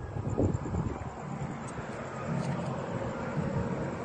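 Outdoor background rumble with wind on a handheld phone's microphone, and a faint low hum rising a little past the middle.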